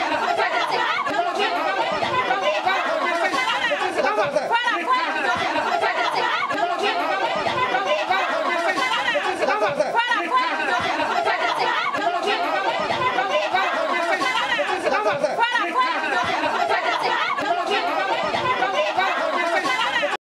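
A crowd of many people yelling and shouting over one another during a scuffle, a dense, unbroken mass of voices.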